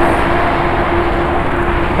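Moving road vehicle: a steady engine hum under continuous road and wind noise, holding level.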